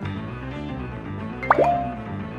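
Light background music plays throughout. About one and a half seconds in there is a short cartoon pop sound effect, a quick upward sweep, marking a new picture card popping onto the screen.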